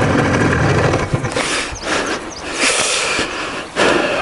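IZh Jupiter-3 two-stroke twin motorcycle engine running for about the first second, then fading away, followed by a few short bursts of rushing, hissing noise.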